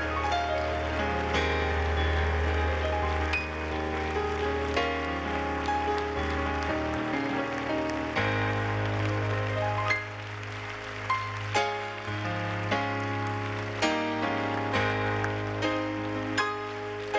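Congregation applauding in a standing ovation over live church music. The music has held chords over a sustained bass note that shifts about eight seconds in, and sharp hits in the second half.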